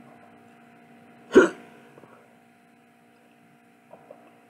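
A single short, sharp hiccup about a second and a half in.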